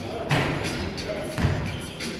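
A basketball bouncing, two loud thuds about a second apart, echoing in a large gym hall.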